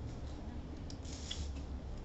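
Sheets of paper rustling briefly about a second in, over a low steady background hum.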